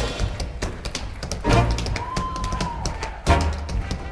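Tap-dance steps clicking sharply on a stage floor over a swing band's sparse stop-time accompaniment, with a walking double bass underneath. The full band hits twice, and one high note is held briefly in the middle.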